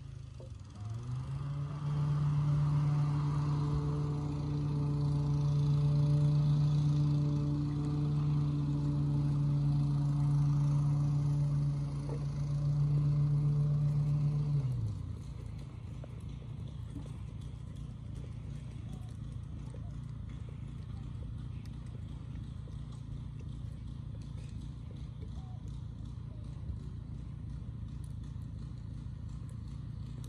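A steady machine-like hum comes up about a second in and winds down at about fifteen seconds. Under it and after it, the soft hoofbeats of a horse moving over arena sand.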